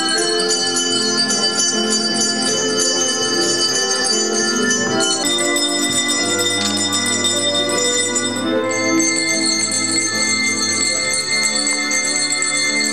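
Many small handbells shaken together by young children, a continuous jangle of overlapping bell tones. The set of pitches shifts about five seconds in and again near nine seconds.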